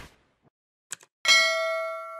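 A quick double click, then about a second and a quarter in a single bright bell ding that rings on and slowly fades: the click and notification-bell sound effect of an animated subscribe button.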